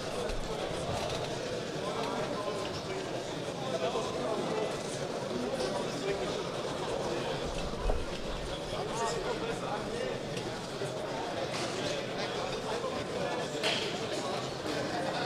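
Crowd murmur and scattered voices in a sports hall, steady and moderate in level.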